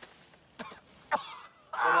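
A man giving two short coughs or throat-clears, about half a second and a second in, then starting to speak near the end.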